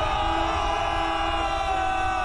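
A sustained brassy horn chord of several notes held steady over a low rumble, as in a dramatic battle score.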